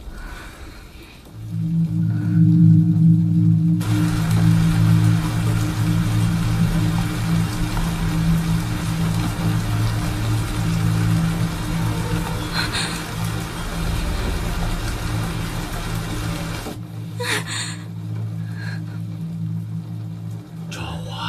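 Film score of a sustained low droning chord that swells in about a second and a half in. About four seconds in, a steady hiss of rain on the car joins it and cuts off suddenly near the end.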